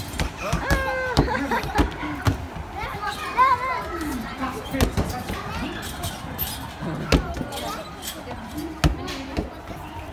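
Basketballs bouncing and thudding on the floor, with irregular single knocks a second or more apart. Children's voices chatter and call out underneath.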